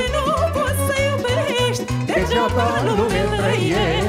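A man and a woman singing a Romanian folk song with wide vibrato, backed by a live taraf band with violin and a steady pulsing bass.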